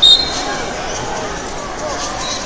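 One short, loud blast of a referee's whistle right at the start, over steady background chatter of crowd voices.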